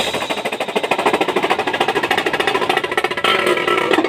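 Marching drumline playing a rapid, even stream of drum strokes, close to a roll, with little bass drum underneath.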